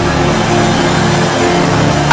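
A large congregation praying aloud all at once, many overlapping voices blending into a dense crowd murmur, over steady held notes of background music.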